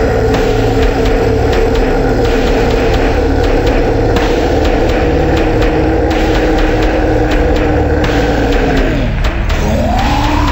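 Metalcore song slowed to half speed and pitched down: sustained distorted guitar chords over a steady drum beat and bass, with a pitch sliding down and then back up near the end.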